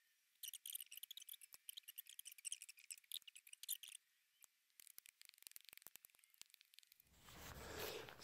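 Faint, rapid high-pitched chirping of small birds, quick broken notes for about three and a half seconds, then only a few faint ticks and a soft rustle near the end.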